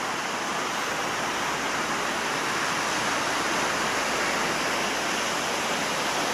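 Ocean waves washing onto a stony beach: a steady rushing hiss, with no single wave break standing out.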